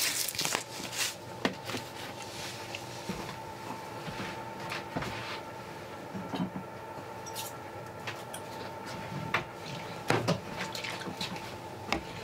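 Roasted garlic and herbs seasoning shaken from a plastic shaker jar onto ground plant-based meat in a stainless steel bowl, a quick run of small clicks and rattles in the first second or so. Then scattered small knocks of handling over a steady background hum, with a louder knock about ten seconds in.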